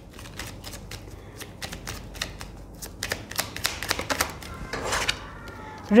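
A deck of oracle cards being shuffled by hand: a quick run of light card clicks and flutters, busiest in the second half.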